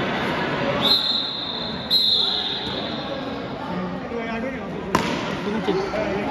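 Players and onlookers chattering in a large echoing sports hall, with two short high squeaks about one and two seconds in. A single sharp knock comes about five seconds in: a cricket bat striking the ball.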